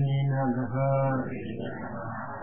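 A man's voice chanting a Buddhist blessing in Pali, holding long notes on a nearly steady low pitch with short breaks between phrases.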